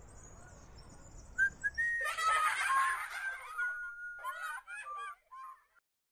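Sound effects on a children's coursebook recording: whistle-like tones and chirps, with voices in the mix, starting about a second and a half in and stopping shortly before the end.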